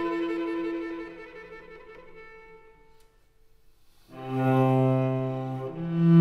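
Solo cello played with the bow, slow and lyrical: a high note held with vibrato fades away into a brief pause. About four seconds in a new low note enters and is held, moving to another note near the end.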